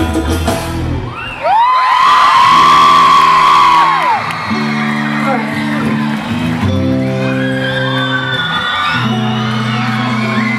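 A live band's rhythmic number stops about a second in, and the crowd answers with loud, high-pitched screams and whoops. The band then holds sustained chords that change every couple of seconds, under scattered cheering.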